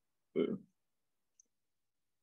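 A man's brief hesitation sound, "uh", about half a second in, then near silence.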